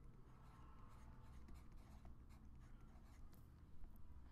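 Faint scratching and light ticks of a stylus writing on a tablet, barely above near silence, with a slightly louder stroke near the end.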